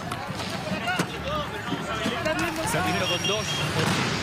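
Street protest field audio: several voices shouting and calling over one another, with a single sharp knock about a second in.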